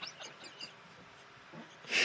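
Faint, breathy laughter dying away into a quiet room, with a man's voice starting up again at the very end.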